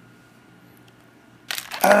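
Quiet room tone for about a second and a half, then a sudden run of crinkling and clicking from clear plastic wrapping as a plastic figurine is handled and pulled from it; a voice begins right at the end.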